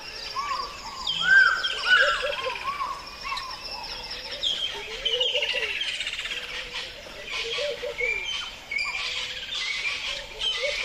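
Several birds singing and calling at once, a mix of repeated whistled notes and fast high trills.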